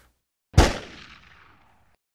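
A single sharp impact sound effect about half a second in, fading over about a second with a reverberant tail. It is an edited-in hit marking the cut to the closing logo animation.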